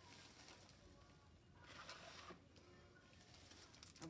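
Near silence: faint room tone, with a soft rustle about two seconds in.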